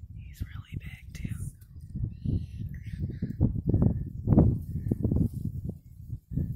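Low, irregular rumbling and buffeting on the microphone, strongest a little after the middle, with faint whispering.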